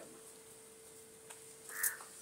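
A crow caws once, briefly, near the end, over a faint steady hum.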